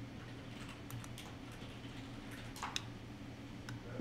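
Scattered, irregular clicks of computer keys over a steady low hum.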